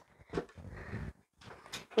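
Quiet room with faint sounds of a person exercising with dumbbells: a soft tap about a third of a second in, a faint short rush of noise, and a couple of faint clicks near the end.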